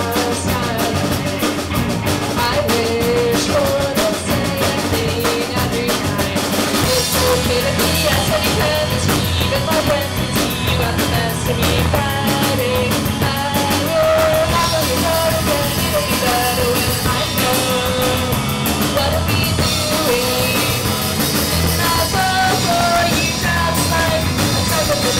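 A small rock band playing a song live and loud: electric guitars and drums, with a singer carrying the melody at the microphone.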